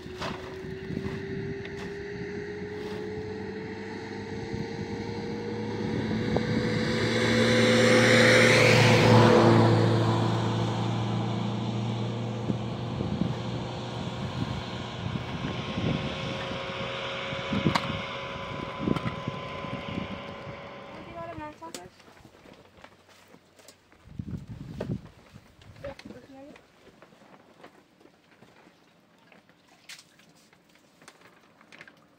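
A motor vehicle's engine, its note rising slowly for several seconds and then holding steady, with a swell of rushing noise loudest about nine seconds in. The engine sound stops about twenty-two seconds in, leaving only faint knocks.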